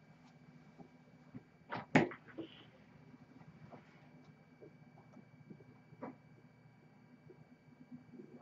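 Quiet room with a steady low hum, broken by a few sharp knocks: a quick double knock about two seconds in, the loudest sound, and a fainter single knock about six seconds in.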